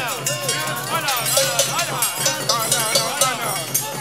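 Free-jazz large ensemble: reeds, trumpets and voices in overlapping, bending and gliding lines over busy, repeated percussion strikes.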